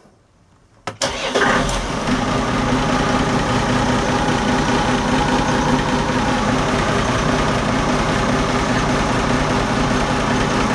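Volvo Penta KAD42A six-cylinder marine diesel started with the key: after about a second of quiet it catches almost at once and settles into a steady idle.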